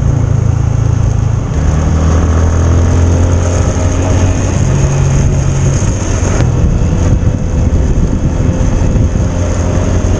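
Motorcycle engine running steadily while riding, its pitch dropping and rising a few times as the throttle changes.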